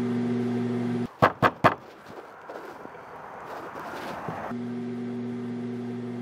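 Microwave oven running with a steady electrical hum. The hum cuts off suddenly about a second in, followed by three sharp knocks and then a hiss that slowly grows louder; the hum returns near the end.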